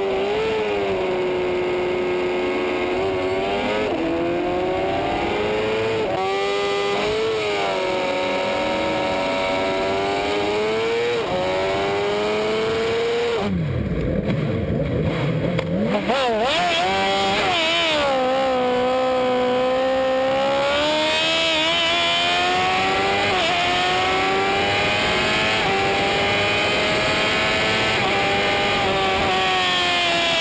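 Onboard sound of a 2007 Suzuki GSX-R750's inline-four held at high revs on the start grid, the pitch wavering as the throttle is blipped. About halfway through it gives way to a 2008 Honda CBR1000RR's inline-four pulling away from a race start, its pitch climbing slowly as it accelerates.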